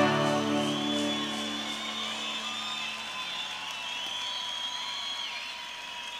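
A final guitar chord rings out and fades over the first few seconds, as the song ends. Under it the audience applauds and whistles.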